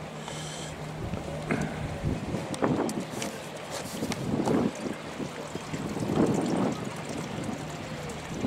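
Harbour water lapping against the boulders of a rock breakwater, in swells every couple of seconds, with wind on the microphone and a faint steady low hum.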